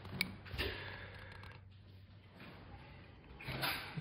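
Utility knife blade scraping and prying at the thin copper board of an LED strip, faint, with two small sharp clicks in the first second.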